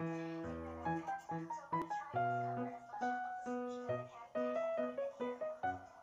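Background music: a melody of plucked notes, about two or three a second.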